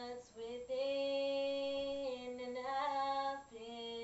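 A young female voice singing unaccompanied, holding long, steady notes with small slides between them and short breaths in between.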